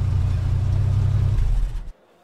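Car engine sound effect, running steadily with a low hum, then cutting off suddenly near the end.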